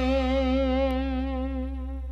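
Live dangdut music: one long held instrumental note with vibrato, fading away near the end, with a faint click about halfway through.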